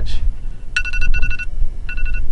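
Electronic beeping: short beeps of a steady two-note tone, two in quick succession about a second in and another near the end, over a low rumble of wind on the microphone.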